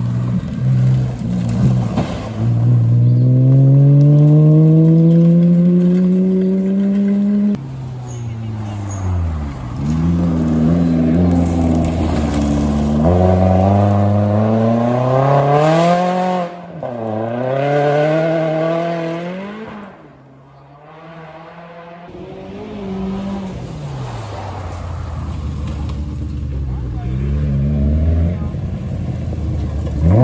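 Subaru Impreza rally car's flat-four engine accelerating hard out of a gravel corner and away, its pitch climbing and dropping sharply at each gear change, then fading out about two-thirds of the way through. Near the end a second rally car comes through the corner, its engine rising quickly.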